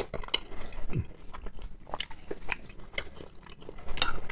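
A man chewing a mouthful of boiled pelmeni with mayonnaise close to the microphone: irregular small mouth clicks and smacks.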